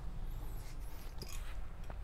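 Faint rustling of a nylon travel backpack shifting on the wearer's back, with a couple of small clicks, over a low steady hum.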